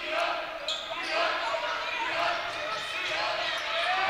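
Basketball being dribbled on a gym's hardwood floor, with voices from the crowd and benches chattering and calling out, echoing in a large gymnasium.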